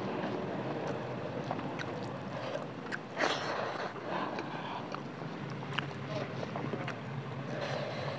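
Close-miked chewing and mouth sounds, with a few sharp clicks and a short louder rush about three seconds in, over a steady low rumble.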